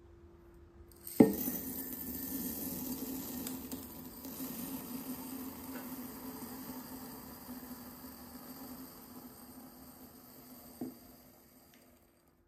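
Small beads poured from one glass goblet into another: a dense, steady rattle of beads pattering onto glass that starts with a sharp clink about a second in and slowly thins out. A single knock of glass sounds near the end.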